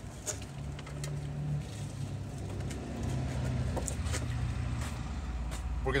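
Low, steady engine hum of a motor vehicle running, a little louder in the second half, with a few light clicks.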